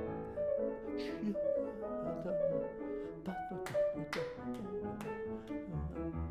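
Grand piano played in a steady, flowing passage of notes, with a few short hissy vocal sounds, breaths or syllables, over it.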